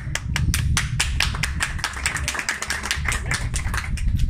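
Applause from a small group of people: many hands clapping in a fast, irregular patter.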